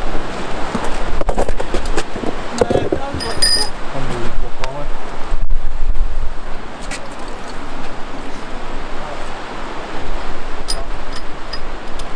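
Steady rushing of the River Dee's rapids beneath the bridge, mixed with wind buffeting the microphone and faint murmured voices.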